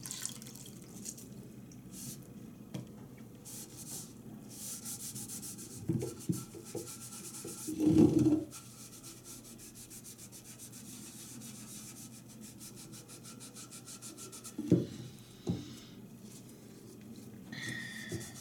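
Damp cloth rubbing over the chalk-painted surface of a watering can, washing off a water-based inkjet image transfer. The rubbing is steady and soft, with a few short louder knocks, the loudest about eight seconds in.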